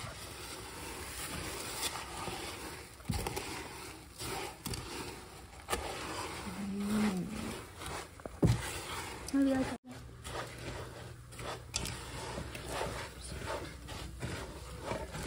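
A spatula stirring cereal into sticky melted marshmallow in a metal pot: an uneven crunching, scraping shuffle with a few sharp knocks of the spatula against the pot.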